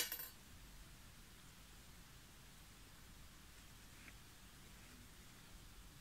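A single short metallic clink with a brief ring at the very start, then near silence: room tone.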